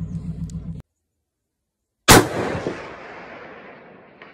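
A single shot from a .280 Ackley Improved rifle, sharp and loud, followed by a long rolling echo that dies away over about two seconds.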